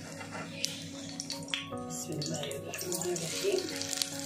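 Egg-dipped bread sizzling in hot oil on a griddle as it is flipped with a metal spatula, with sharp scrapes about half a second and a second and a half in. Background music plays throughout.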